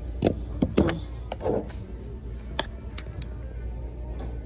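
Glass jar candles and their metal lids clinking as they are picked up and opened on a store shelf: a handful of sharp clicks and knocks over a low steady hum.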